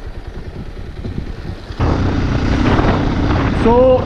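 Motorcycle engine running under way with wind rushing over the microphone; a little under two seconds in, the sound jumps suddenly to a louder, fuller rush with a steady low engine note.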